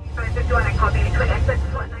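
Steady low rumble of a vehicle driving, heard from inside the cab, with indistinct voices over it.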